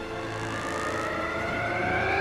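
A film-soundtrack riser: a tone of several pitches gliding steadily upward together and swelling louder, building tension.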